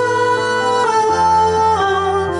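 A woman singing held notes into a handheld microphone over a karaoke backing track.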